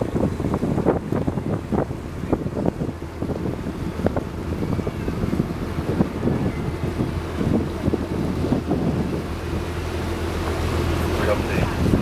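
Wind buffeting the microphone on a moving boat, over the steady low hum of the boat's engine, which grows louder near the end.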